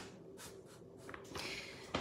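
Faint scraping and rustling of hands handling things on a tabletop, a few short scratches over a steady low hum.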